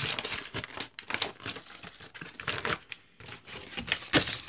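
A sheet of white paper being crumpled and handled in the hands: a dense run of quick crackles, with short pauses about a second in and about three seconds in.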